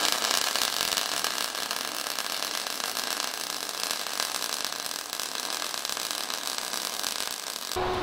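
MIG welding arc from an Everlast iMig 200 crackling and hissing steadily as a bead is laid on steel, run hot while the welder is being dialed in. It cuts off near the end as the trigger is released.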